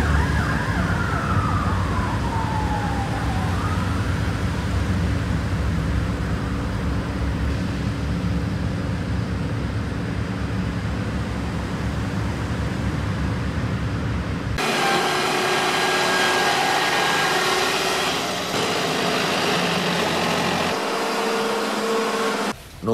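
A siren wail falling in pitch over the first three or four seconds, above a steady low rumble. About fourteen and a half seconds in, the sound cuts off abruptly and a different steady sound with a few held tones and little bass takes its place.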